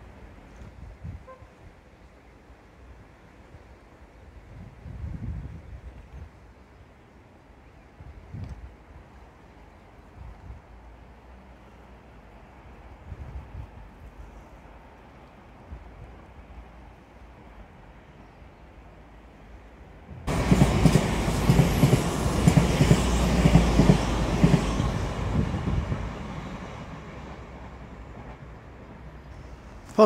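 A train passing. It cuts in suddenly about two-thirds of the way through as a loud, full rumble and fades away near the end. Before it there is only a quiet outdoor background.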